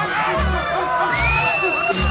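Reggae band playing live with electric guitar, bass and drums, and an audience cheering over the music. In the second half a high note rises and is held for about a second.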